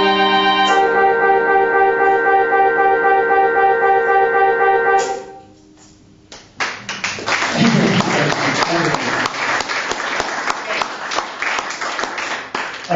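A sustained chord of steady electronic keyboard-like tones, changing once near the start, ends about five seconds in. After a short lull, the audience applauds.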